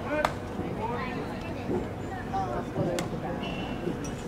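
A pitched baseball popping into the catcher's mitt about a quarter second in, one sharp pop, with voices in the background. Another sharp click comes about three seconds in.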